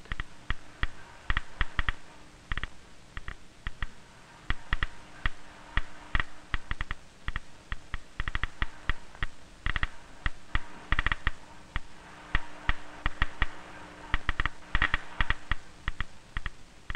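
Geiger counter clicking irregularly, some clicks coming in quick clusters, as it detects radiation from the radium paint on a watch face.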